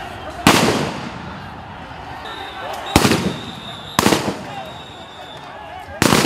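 Loud, sharp reports of police firing, about half a second in, near the middle and a second later, each with a short echoing tail, and another starting at the very end. People's voices are heard between the shots.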